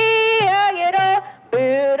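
A woman singing a Japanese protest chant into a microphone, holding the last notes of a line, with no instruments. The singing stops about a second in, and after a short gap a voice starts again.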